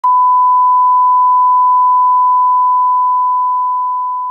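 Test-signal reference tone that goes with colour bars: one steady, pure, unwavering beep that starts to fade out near the end.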